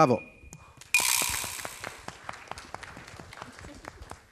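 Audience applauding a correct answer. The clapping starts suddenly about a second in and fades away, thinning to scattered separate claps near the end.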